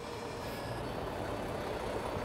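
Concrete mixer truck's diesel engine running at a low, steady rumble as the truck creeps forward.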